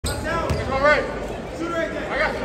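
A basketball bounced once on a hardwood gym floor about half a second in, during a pre-free-throw dribble, with people's voices echoing in the gym around it.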